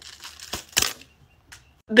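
A latex special-effects prosthetic being peeled off the skin and hair, a crinkling, tearing rustle, with two sharp clicks about half a second in as glued-on gemstones fly off.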